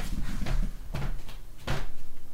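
A few soft, unevenly spaced knocks over a low, steady hum.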